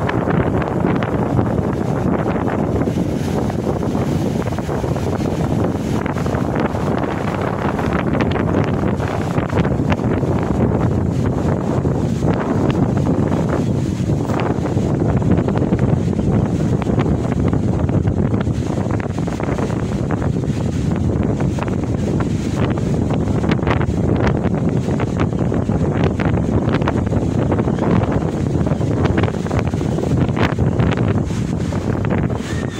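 Wind buffeting the microphone steadily, over the noise of rough sea surf breaking on the beach.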